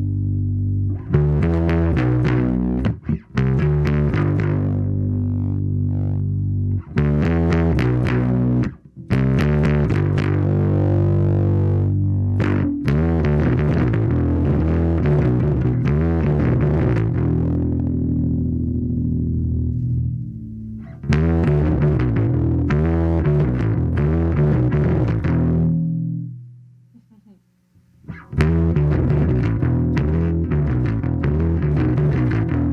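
Electric bass, a Fender Mustang bass, played through the Dogman Devices Earth Overdrive pedal: overdriven sustained notes and riffs with a heavy low end. The playing breaks off briefly a few times, and near the end it dies away for about two seconds before starting again.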